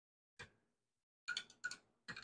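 A few faint clicks of a metal knife tapping against the glass of a Pyrex measuring cup while it stirs glitter into liquid soft plastic: one click, then a quick cluster of four about a second later.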